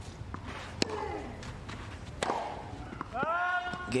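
Tennis balls struck with rackets in a clay-court rally: two sharp hits about a second and a half apart, each followed by a short grunt. Near the end a loud shouted voice.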